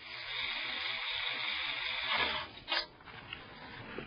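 A screwdriver driving a screw into a floppy drive's mounting holes in a PC case's metal drive cage: a steady grinding that stops sharply after about two seconds, then one short burst and a few light clicks.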